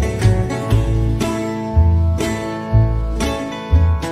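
Instrumental country acoustic guitar picking, with a deep bass note struck about every half second to a second beneath the plucked melody notes; no singing.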